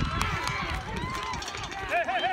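Several voices calling out at once across an outdoor football field, with an uneven low rumble underneath and a loud, rising-and-falling shout at the very end.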